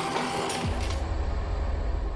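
A deep, steady low rumble comes in under a second in and holds, with music faintly beneath it: a sound-design drone in a TV drama soundtrack.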